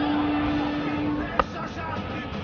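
Cricket ground crowd noise under a TV broadcast, with one long, steady horn-like note that stops about a second in and a single sharp crack just after.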